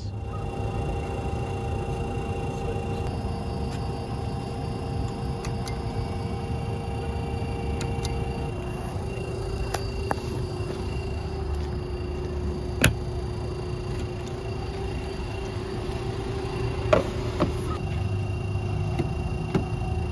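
Steady whirring hum from a DC fast charger's cooling fans over a low rumble of wind and traffic, with its pitch dropping a step about eight seconds in. A single sharp click comes near thirteen seconds.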